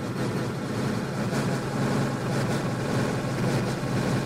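Eurorack synth patch through an Erica Synths Pico DSP granular delay held in freeze mode, the frozen grains looping: a steady hissing wash over a low hum.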